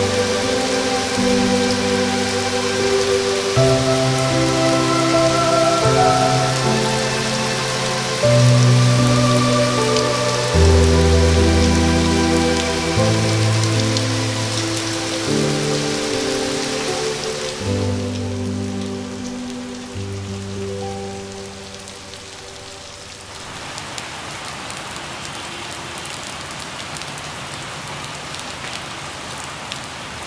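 Steady heavy rain with a slow, sustained music score playing over it; the music fades out about two-thirds of the way through, leaving only the rain.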